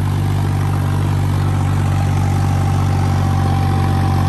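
John Deere tractor's three-cylinder diesel engine running at a steady speed, heard from the driver's seat, with a faint steady whine over it.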